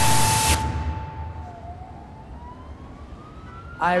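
A half-second burst of TV-static glitch sound effect, followed by a quieter single siren tone that holds steady, dips, then slowly rises in pitch over city background noise.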